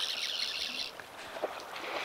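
Fly reel's clicking drag buzzing in a fast, high rattle while a hooked trout is played, cutting off about a second in.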